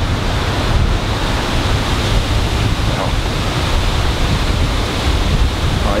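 Wind blowing across an outdoor microphone: a steady low rumble with a rushing hiss over it.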